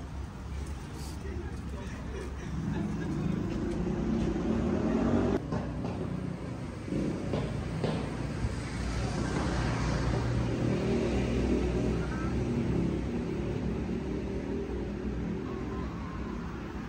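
City street sounds: motor traffic passing, swelling twice, with people talking nearby.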